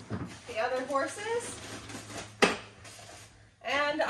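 Plastic feed pans knocking together as they are handled and lifted off a shelf, with one sharp knock about two and a half seconds in. A woman's voice speaks briefly about half a second in and again near the end.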